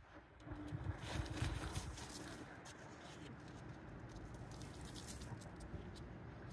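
Faint rustling and light patter of dry, dusty fertilizer being sprinkled by hand around the base of a shrub.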